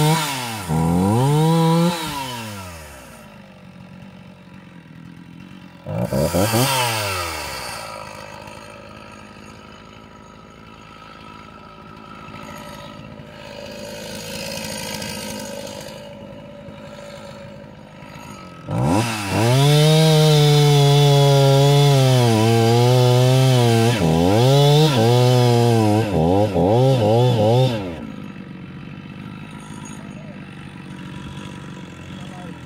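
Stihl 029 two-stroke chainsaw with a semi-chisel chain cutting birch logs at full throttle, dropping back to idle after about two seconds. A short rev up and down comes about six seconds in, then the saw idles until a long cut near the end, its pitch dipping repeatedly under load before it falls back to idle.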